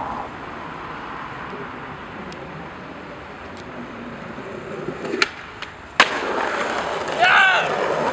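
Skateboard wheels rolling on pavement, then a sharp clack about five seconds in and a louder impact of the board a second later, followed by a short cry from a person.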